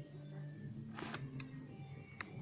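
Quiet music from a television, with a short cluster of sharp clicks about halfway through.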